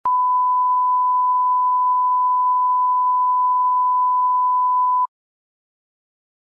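Steady 1 kHz line-up tone over a broadcast countdown clock, a single pure beep at the standard −18 dBFS alignment level, used to set audio levels before the programme. It lasts about five seconds and cuts off sharply.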